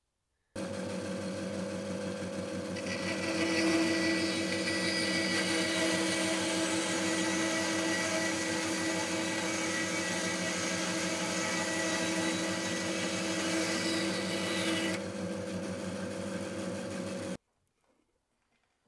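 Small vertical bandsaw running steadily, its blade cutting through the wood of the axe handle where it protrudes from the head, the cut louder and higher from about three seconds in until about fifteen seconds. It starts and stops abruptly.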